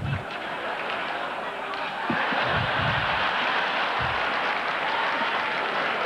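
Large banquet audience applauding and laughing, the applause swelling about two seconds in and holding steady.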